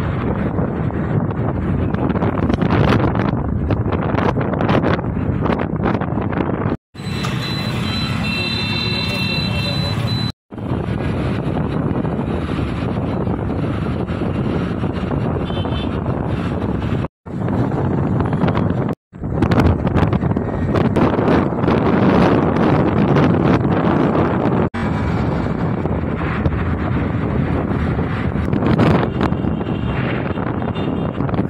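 Wind rushing over the microphone with road and traffic noise from a moving two-wheeler, broken by several sudden cuts to silence where short clips are joined.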